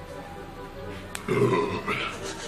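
A single low burp lasting about half a second, coming just after halfway through and right after a sharp click, from a man who has just gulped beer.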